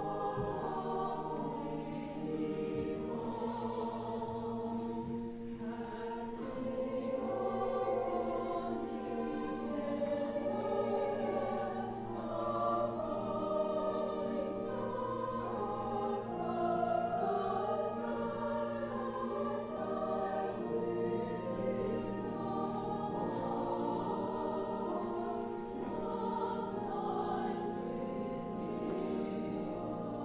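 Mixed church choir of men's and women's voices singing a choral piece, sustained and unbroken.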